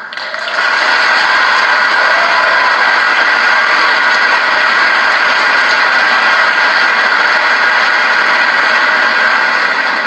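Audience applauding: a steady wash of clapping that builds up within the first second, holds evenly, and eases near the end.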